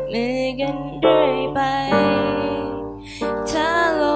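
A young woman singing a slow ballad with digital piano accompaniment. One phrase fades out about three seconds in and the next begins right after.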